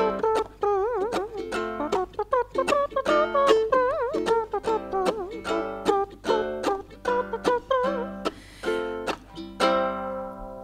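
Ukulele strummed in a steady rhythm through the chorus chords, with a wordless vocal melody, wavering in pitch, carried over it in place of the lyrics.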